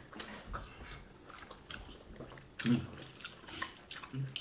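Faint wet chewing and lip-smacking of wheat fufu and egusi soup eaten by hand, with scattered small clicks and one short vocal sound a little before three seconds in.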